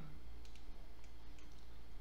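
Faint computer-mouse clicks about half a second in, as a vertex being moved in Blender is set in place, over a steady low hum.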